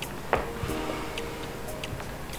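Quiet background film score of soft sustained notes, with a few light, sparse ticking clicks.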